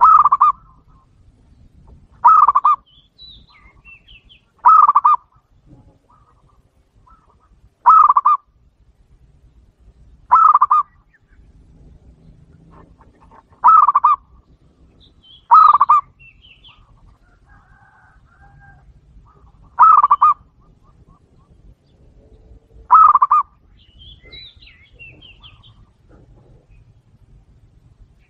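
Caged zebra dove (perkutut) giving short coos, nine in all, each about half a second long, spaced two to four seconds apart.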